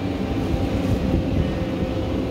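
Steady low rumble with a faint steady hum, heard inside an enclosed Ferris wheel gondola.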